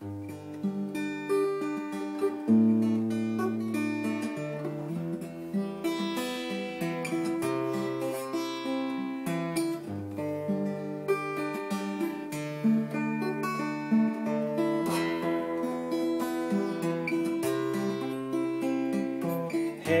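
Acoustic guitar strummed in a steady chord progression, the chords changing every second or two. It starts suddenly at the beginning.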